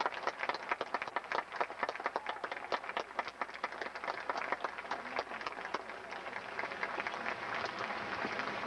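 Audience applauding: many hands clapping at once, thinning out toward the end.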